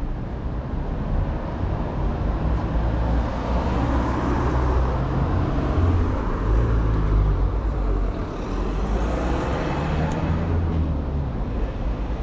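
Street traffic: cars driving past on the road, with tyre and engine noise that swells about halfway through and again near the end.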